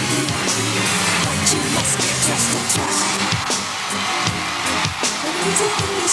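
Live concert music from a band playing a hard-rock section, with electric guitar and drums and frequent cymbal hits.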